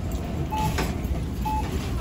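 Busy supermarket checkout ambience: a steady low rumble of store noise with a short electronic beep about once a second, from checkout barcode scanners.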